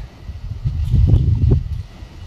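Wind buffeting the microphone: a low rumble that swells around the middle and eases off near the end.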